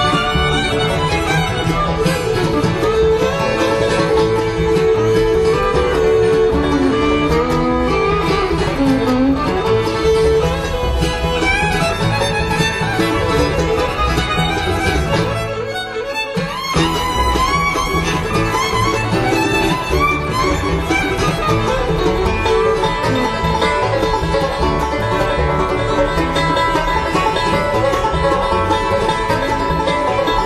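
Live acoustic bluegrass band playing a fast instrumental tune, with fiddle, banjo and guitar. The sound dips briefly about sixteen seconds in.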